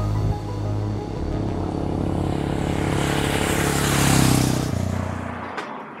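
Background music, with a vehicle passing by on the road: its sound swells to a peak about four seconds in and fades away. The music stops suddenly near the end.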